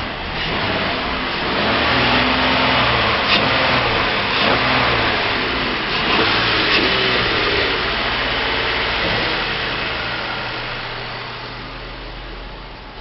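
2014 Ford Taurus SEL's 3.5-litre V6 engine running, with a dense steady rush of engine noise that rises over the first couple of seconds and eases down near the end.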